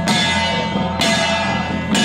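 Taiwanese temple-procession troupe's percussion: loud, ringing metallic strikes at about one a second, over a held, slightly wavering melody line.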